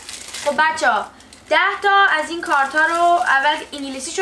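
Speech: a person talking, with a short pause about a second in.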